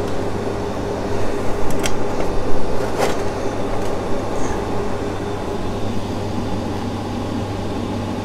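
Steady hum of a fan or air-handling motor, with two light clicks about two and three seconds in.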